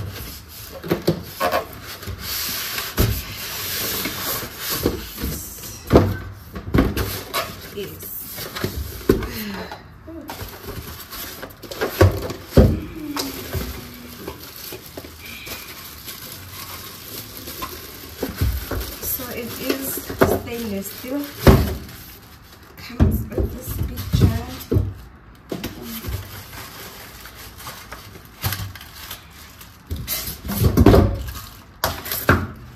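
A new blender being unpacked: the cardboard box and its flaps handled, the plastic wrapping rustling, and the polystyrene packing insert lifted out, with frequent sharp knocks and clatters throughout.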